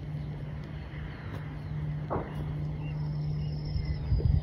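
A steady low engine-like hum, briefly interrupted by a short rustle or knock about two seconds in.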